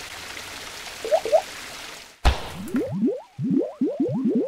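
Animated logo sting sound effects: a steady rushing whoosh with two small blips, then a sharp hit about two seconds in, followed by a quick run of short rising bloops.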